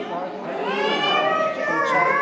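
A voice in long rising and falling phrases, with chatter from the crowd, in a large echoing church hall.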